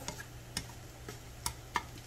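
Chopsticks tapping and scraping against a frying pan as scrambled eggs are stirred and broken up: a few sharp, irregular clicks over a steady low hum.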